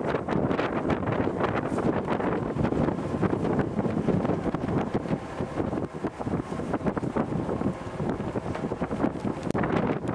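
Wind buffeting the microphone on the open deck of a ship at sea, a steady rush with constant irregular gusts.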